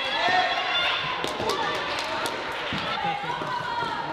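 Floorball play on an indoor court: sharp clicks of plastic sticks and ball on the hard floor under shouting voices of players and spectators, which swell about half a second in.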